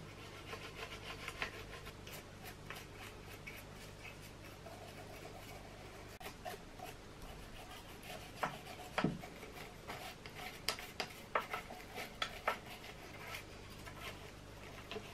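Toothbrush bristles scrubbing lint and dirt out of the metal hook race and bobbin area of a vintage Singer sewing machine: a dry rubbing with irregular small clicks and taps, the loudest about nine seconds in.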